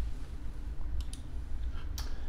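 Computer mouse button clicks: a close pair about a second in and a sharper single click near the end, over a low steady hum.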